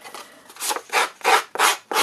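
The edge of an open scissor blade scraped repeatedly along the edge of a cardstock panel to distress and fray it, a quick series of scraping strokes, about two or three a second.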